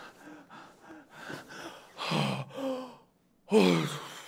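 A young man gasping and sighing in several separate breaths, the loudest one near the end after a brief silence.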